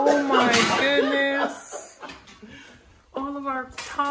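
A woman's voice talking during the first second and a half and again near the end, with quieter sounds in between.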